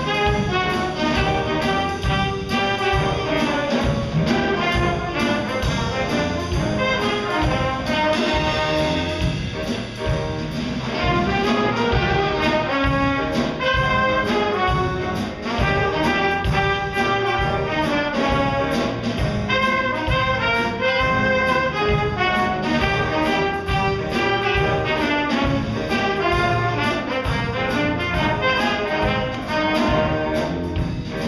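Small jazz combo playing live: alto and tenor saxophones, trumpet and trombone playing together over piano and drum kit, with a steady beat.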